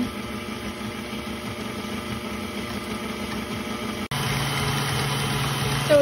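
KitchenAid stand mixer running steadily, its wire whisk beating a thin pudding mixture in a steel bowl. About four seconds in the sound drops out for a moment and comes back louder with a steady low hum: the mixer turned up to speed three so the pudding will thicken.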